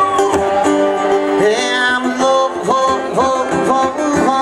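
Live acoustic guitar strumming chords, with a harmonica playing a melody of held and bent notes over it in an instrumental break.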